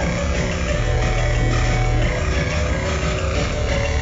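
Live electronic music from a modular synthesizer setup: a dense, noisy layer over low sustained bass notes that shift pitch every second or so.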